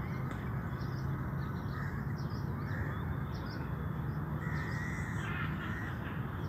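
Birds calling over and over, with crows cawing among them, over a steady low rumble.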